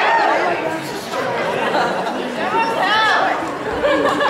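Audience chatter: many voices talking over one another at once.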